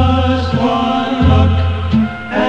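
Music from an AM radio broadcast: sustained chords over held bass notes that change about once a second, with the top end cut off as on AM radio.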